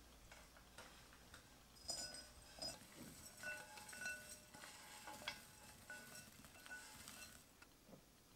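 Toasted oats and nuts poured from a frying pan into a glass mixing bowl: a faint dry rattle of small clicks and hiss from about two seconds in until near the end, with the glass bowl ringing faintly at a few steady pitches as the grains strike it.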